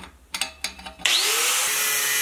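A few light metallic clicks, then about a second in a power tool with an abrasive wheel spins up with a rising whine and grinds steel, loud and steady, throwing sparks.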